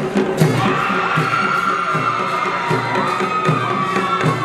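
Band music: a steady drum beat about twice a second under a high, held wind-instrument melody that slides down about three seconds in.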